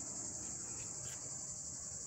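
Steady, high-pitched chorus of singing insects.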